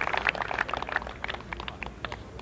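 Golf spectators clapping in applause, the clapping dying away.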